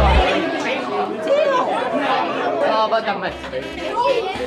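Several voices chattering in a room. Music with a steady bass cuts out just after the start and comes back in the second half.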